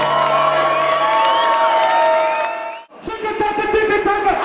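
Live concert crowd cheering and shouting. The sound cuts out abruptly for a moment about three seconds in, then the crowd noise comes back.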